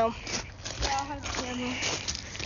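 A child's voice talking quietly and unclearly, with a short sound right at the start and faint outdoor background noise.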